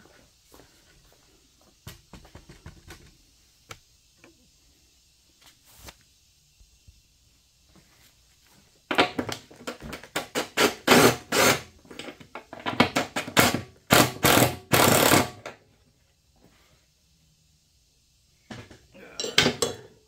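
A 20 V cordless impact driver hammering in several bursts over about six seconds, working loose the bolt on a mower deck pulley. A few light clinks of tool handling come before it.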